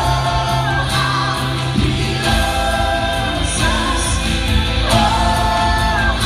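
Live church worship band and congregation singing a slow praise song together: long held sung notes over a steady bass note that changes about two seconds in.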